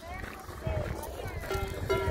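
Voices and music together, heard as short pitched phrases over a low rumble.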